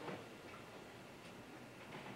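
Quiet meeting-room tone with a few faint, scattered clicks.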